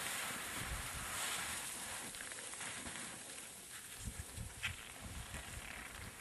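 Skis sliding and scraping on steep, firm snow, a hiss that fades after the first couple of seconds, with low wind buffeting on the microphone and a few small clicks near the middle.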